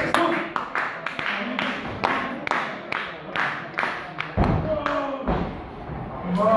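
Spectators clapping in a steady rhythm, about two to three claps a second, with a voice shouting out about four and a half seconds in.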